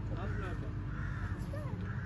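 A bird cawing repeatedly, a few short harsh calls about half a second apart, over a faint steady hum and low background noise.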